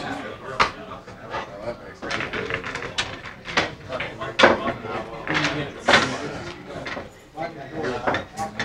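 Indistinct conversation in a pool hall, broken by a few sharp clicks of pool balls striking each other.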